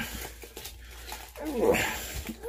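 A whining, whimper-like cry that falls in pitch, loudest about one and a half seconds in, after a shorter one at the very start.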